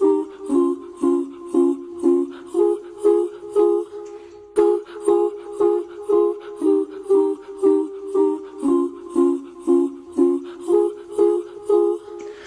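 Instrumental song intro: a plucked string instrument, ukulele-like, repeats a two-chord figure at about two strokes a second. The figure thins briefly about four seconds in, then carries on.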